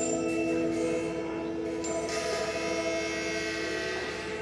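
Electric guitar played through a table of effects pedals, making an experimental drone of several held, overlapping tones. A sharp attack comes right at the start, and a hissing, noisier layer swells in from about two seconds in.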